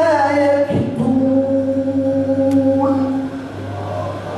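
A man reciting the Quran in melodic tajweed style into a microphone: a short phrase, then one long held note from about a second in until near the end, as he draws out a vowel. A steady low hum runs underneath.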